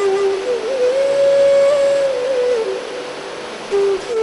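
A slow solo flute melody of long held notes that slide up and down between pitches, played as background music. It drops to a low note about three quarters of the way through.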